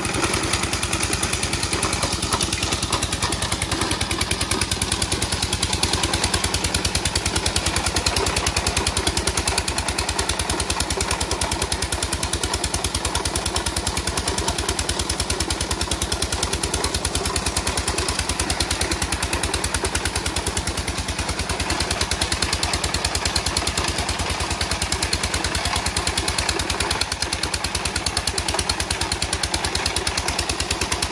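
Engine-driven stone-grinding machine running steadily with a fast, even beat.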